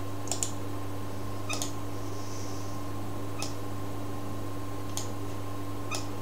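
Computer mouse clicks: two quick double clicks in the first two seconds, then single clicks every second or two, over a steady low electrical hum.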